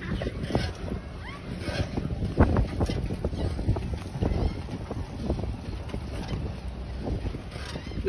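Wind buffeting a phone microphone outdoors, a steady low rumble, with faint voices in the background.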